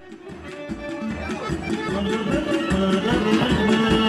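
Traditional folk dance music with a steady beat, fading in over the first couple of seconds after a moment of silence.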